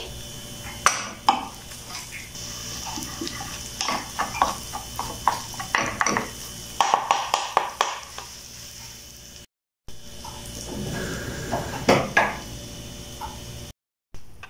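Wooden spatula scraping and knocking against a nonstick frying pan as scrambled egg is stirred through melting butter, over a steady sizzle.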